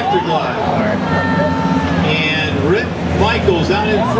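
Front-wheel-drive skid plate race cars running on the oval, engines droning, their locked rear ends dragging steel skid plates along the asphalt. Voices talk over it.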